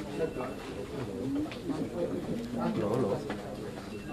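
Several men's voices talking at once in low tones, a steady murmur of conversation among a small group.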